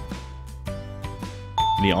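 Light background music of repeated plucked guitar-like notes. Near the end a bell-like chime sounds, marking the answer reveal, and a man's voice begins just after it.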